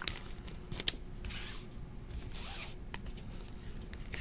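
Trading cards being handled: cards sliding against one another in two short scraping swishes, with a few light clicks as card edges tap together.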